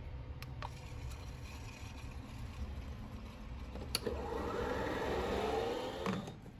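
A small electric milk frother running with a low steady hum after its button is pressed. About four seconds in there is a click, then liquid pouring into a container, its pitch rising as it fills.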